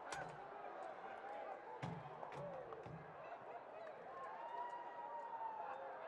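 Faint outdoor ambience with distant, indistinct voices and a few soft clicks.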